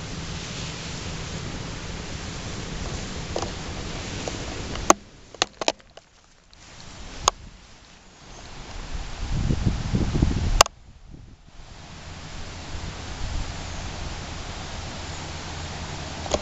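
Steady outdoor hiss with wind gusting on the microphone, swelling into a low rumble near the middle. It is broken by a few sharp clicks and short drop-outs where the recording cuts.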